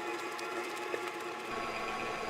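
Electric stand mixer running steadily, its beater whipping eggs and sugar in a steel bowl, with an even motor whine.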